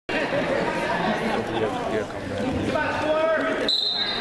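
Indistinct voices in a large gym, then near the end a short, steady, high-pitched blast of a referee's whistle.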